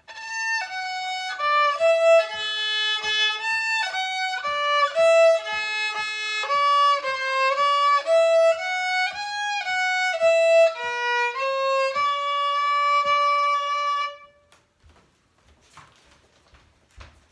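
Solo violin (fiddle) playing a simple tune, one bowed note after another, finishing on a long held note a couple of seconds before the end.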